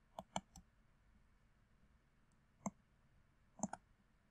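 Faint computer mouse button clicks: three quick clicks, a single click about two-thirds of the way through, and a double click near the end.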